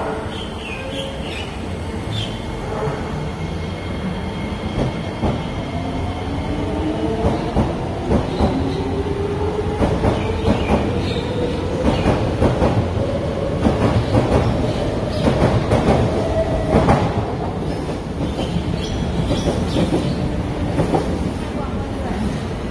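SMRT MRT train pulling away along the elevated track, its traction motors whining in a slowly rising pitch as it gathers speed. Its wheels click sharply and repeatedly over rail joints and points.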